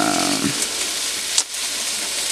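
Steak sizzling in a frying pan, a steady hiss, with one sharp click about a second and a half in. A drawn-out vocal 'euh' trails off in the first half-second.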